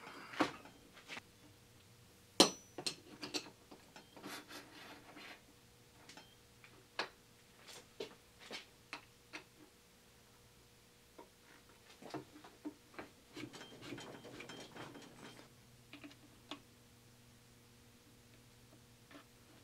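Scattered light metallic clicks, taps and clinks of hand tools and steel parts being handled on a homemade metal lathe, with one sharper clank about two seconds in and a busier run of clicks near the end. A faint steady hum runs underneath.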